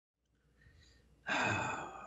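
A man's breathy sigh that starts suddenly just over a second in and trails off.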